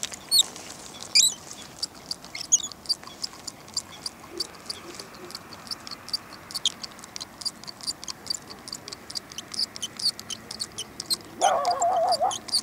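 Small birds chirping: many quick, irregular high chirps, with a few sweeping calls in the first few seconds. A short wavering call comes in near the end.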